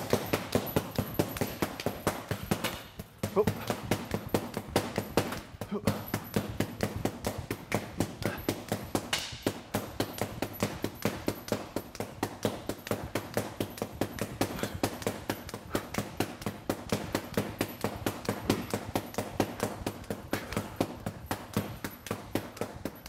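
An arnis stick striking a hanging leather heavy bag in a rapid, even stream of sharp slaps, several hits a second at full speed, with two brief breaks in the first six seconds.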